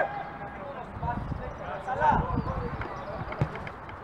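Sounds of a small-sided football game on artificial turf: players' voices calling out, and a couple of dull thuds of the ball being kicked, about two seconds in and again near the end.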